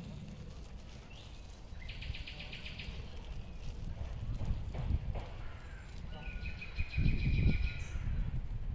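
Garden ambience with wind rumbling on the microphone and a bird trilling twice in short, rapid runs, about two seconds in and again near the end.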